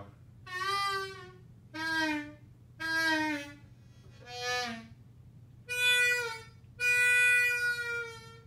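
Diatonic blues harmonica (blues harp) played in single notes: six short phrases, several bent downward in pitch, the last note held about a second and a half.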